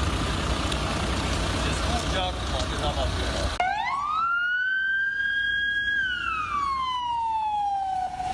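Loud rushing noise of wind and floodwater on an amateur recording, then, about three and a half seconds in, a siren rises in one slow wail, holds its pitch for about two seconds and falls away.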